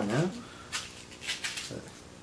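Speech: a short exclaimed "oh no, yeah" at the start and a brief murmured "mm" near the end, with a few faint rustles between.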